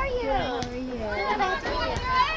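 Several high-pitched young voices calling out and chattering over one another, as players and onlookers do at a girls' soccer game, over a constant low rumbling noise.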